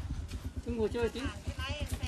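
Faint voices talking in the background over a low, irregular rumble.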